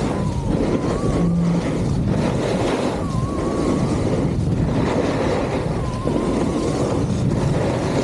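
Wind rushing over the microphone of a ski-mounted action camera during a downhill run, mixed with skis scraping and carving over groomed snow. A faint wavering whistle comes and goes.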